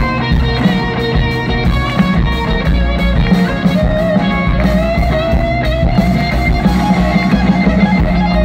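Live rock band playing an instrumental passage: an electric guitar plays a lead line over bass and drums. In the middle, one long guitar note bends slowly upward.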